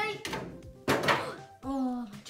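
A short thunk and rustle about a second in, as foil Pokémon booster packs are handled on the table. It sits between the tail of a cheer at the start and a short vocal sound near the end.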